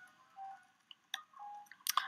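Faint, sparse computer-keyboard keystrokes, a few separate clicks while code is typed, with two brief faint steady tones in between.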